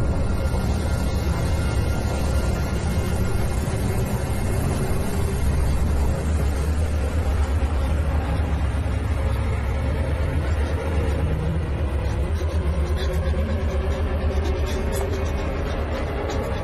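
Horror film underscore: a low, steady rumbling drone with faint held tones above it.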